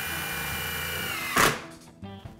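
Power drill driving a screw through a plastic clip: a steady motor whine for about a second and a half, ending in a short, loud burst of noise as it stops.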